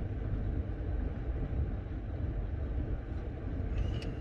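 Steady low rumble heard inside a car's cabin.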